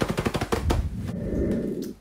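A drum roll sound effect: a fast run of drum strokes that ends in a final hit about two-thirds of a second in, which rings on for about a second before dying away.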